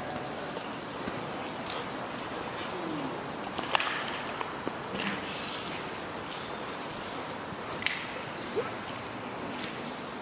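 Steady low hiss of ambient background in a large, empty derelict building, with a few sharp taps and clicks scattered through it.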